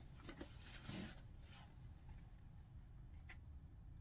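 Near silence with a few faint scrapes and taps of cardboard packaging being handled, as a printed sleeve is slid off a box.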